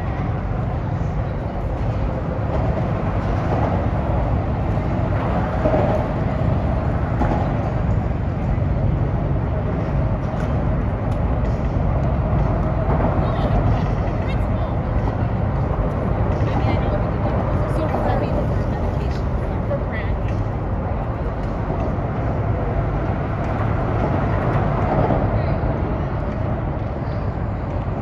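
Steady low rumble of city road traffic, unbroken throughout, with indistinct voices faintly in the background.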